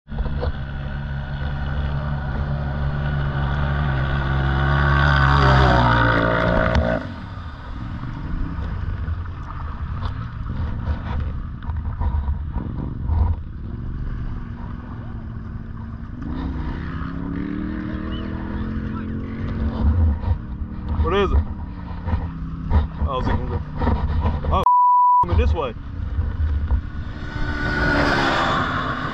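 Side-by-side UTV engine revving, its pitch climbing for about six seconds, then running farther off with its pitch rising and falling as it is driven across sand. Near the end a short single-tone censor bleep cuts in for about half a second.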